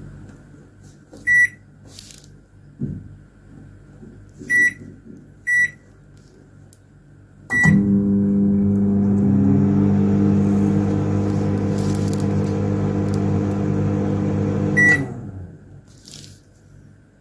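Black+Decker 30L 900W microwave oven: its keypad beeps four times as buttons are pressed, the last beep for Start. The oven then runs with a loud, steady hum for about seven seconds until a fifth beep, when the hum stops as the oven is stopped.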